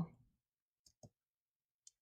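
Near silence with a few faint, short clicks, about a second in and again near the end.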